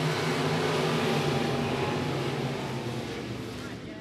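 A pack of IMCA stock cars' V8 engines running hard together at the start of the race, a steady roar that slowly dies away toward the end.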